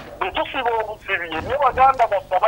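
Speech only: a person talking over a telephone line, thin and narrow-sounding.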